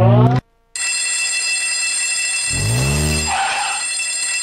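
Video slot machine sound effects: the spinning-reel tones, climbing in pitch, cut off about half a second in. After a brief silence a steady electronic bell rings, the signal that three scatter symbols have landed and triggered the free game. Past the middle a low swooping tone and a short flurry join the ringing.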